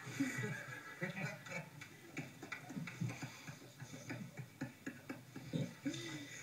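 A man laughing in many short bursts, heard through a television's speaker.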